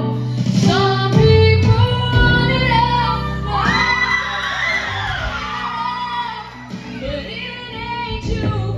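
A teenage girl singing solo into a handheld microphone over an amplified backing track, with a long, bending held note through the middle.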